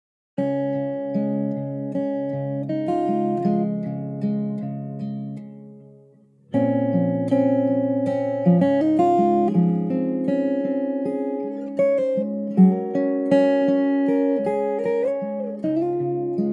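Acoustic guitar playing a slow picked introduction, its notes left to ring. The playing fades almost to nothing near the middle, then starts again about six and a half seconds in.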